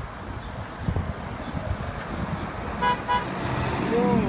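Two short car-horn toots about three seconds in, over the low rumble of street traffic, with a steadier engine hum coming up near the end.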